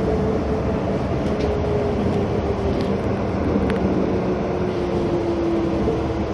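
Nippori-Toneri Liner 330-series rubber-tyred automated guideway train running, heard from inside the car: a steady rumble of running noise with a thin whine that slowly falls in pitch.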